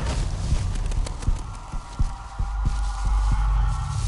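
Trailer sound design: a deep, throbbing low rumble with a run of heavy low thuds like a heartbeat. A held higher drone joins about halfway through.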